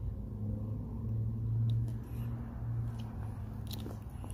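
A steady low engine hum that swells a little around the middle, with a few faint clicks over it.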